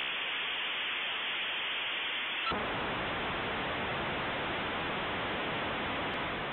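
Dial-up modem handshake sound: a steady hiss of line static held to telephone-line pitch, which turns fuller and deeper about two and a half seconds in.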